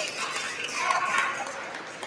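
A pause in a man's speech at a podium microphone: low room noise in a large hall with faint, indistinct voices.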